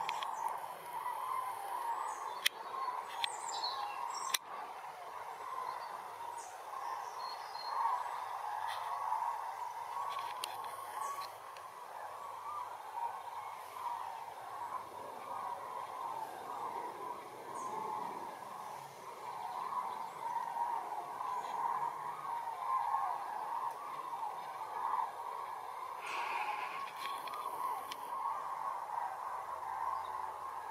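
A large flock of migrating common cranes calling overhead, their many calls overlapping into a continuous chorus. A few sharp clicks sound between about two and four seconds in.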